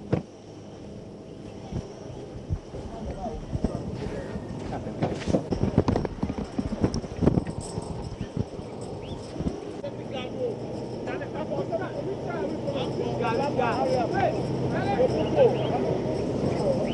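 Outdoor field sound: a scattering of knocks and thumps in the first half, then several people talking indistinctly at once, growing louder toward the end.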